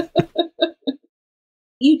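A person's laughter tailing off in a run of short, fading bursts that stop about a second in.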